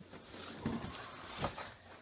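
A cardboard guitar box being opened: packing tape pulled free and the lid flap lifted, with a scraping rustle of cardboard and a couple of dull knocks.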